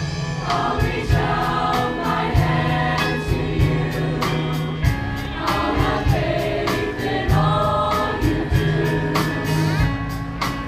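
Middle-school show choir of mixed boys' and girls' voices singing in parts over instrumental accompaniment with a bass line and a steady beat.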